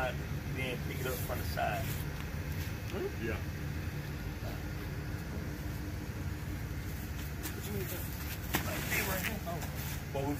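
Vehicle engine idling: a steady low hum, with a few scattered knocks from handling.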